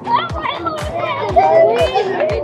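Group of children shouting and calling out excitedly over dance music with a steady beat, a little more than two beats a second.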